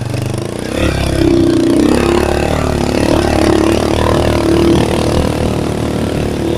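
Motorcycle taxi's engine running under load as it climbs a muddy dirt track, heard from the pillion seat; it gets louder about a second in and then holds steady.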